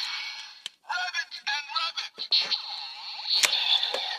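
A click as the DX Full Full Rabbit Tank Bottle goes into the DX Build Driver toy belt. The belt's electronic voice then calls out through its small speaker, followed by its looping standby music, with another sharp click near the end.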